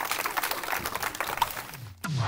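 Scattered applause from a crowd of onlookers, a rapid patter of claps that thins and fades away toward the end.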